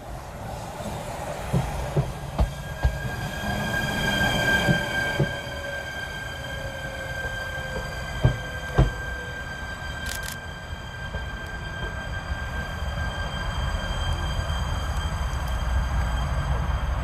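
Stadler FLIRT electric train moving slowly through a station, with a steady high electric whine and a few sharp knocks from the wheels. A low rumble grows louder toward the end.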